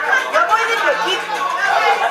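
Group of people talking over one another around a dinner table, a steady babble of overlapping voices.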